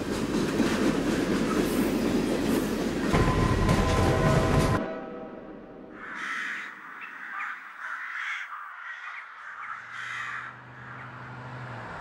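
A loud rolling rumble, with steady tones joining in shortly before it cuts off abruptly about five seconds in; then a string of short, harsh bird calls.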